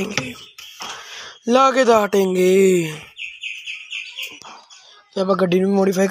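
A person's voice, with a rapid, evenly pulsed high-pitched chirping in the middle lasting about a second and a half.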